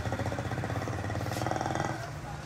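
A small vehicle engine running with a fast, even pulse, dropping away near the end.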